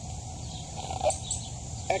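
Steady outdoor background noise with a couple of short bird chirps, about a second in and near the end.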